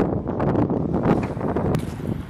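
Wind buffeting the microphone outdoors, an uneven low rumble over faint street ambience.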